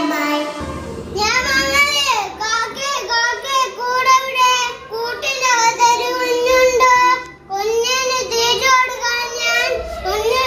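Young children singing a song, one child taking over from another, with short breaks between phrases.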